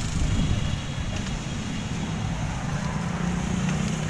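Road traffic running past, a steady low rumble, with an engine hum growing louder about halfway through.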